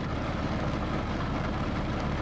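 Steady low rumble and hiss inside a parked car's cabin, with no sudden sounds.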